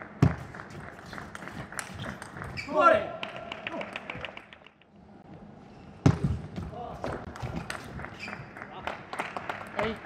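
Table tennis ball clicking rapidly back and forth off rackets and table in two fast rallies, each opening with a louder knock. A player's shout comes about three seconds in as a point ends, and another near the end.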